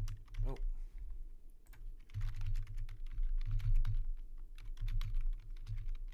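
Typing on a computer keyboard: quick runs of keystrokes separated by short pauses.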